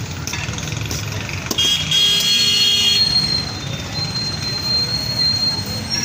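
Street traffic rumbling, with a vehicle horn sounding for about a second and a half a little way in, followed by a thin high steady whine for a few seconds.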